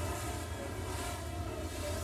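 Animated sound effect of a huge wave of water surging: a steady low rumbling rush with a held droning tone over it.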